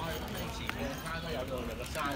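Voices of people talking, with a short click about two-thirds of a second in.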